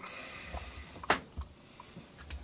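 Handling noise from a disassembled vacuum pump motor being turned over by hand: a soft rubbing hiss, then one sharp click about a second in and a few faint ticks.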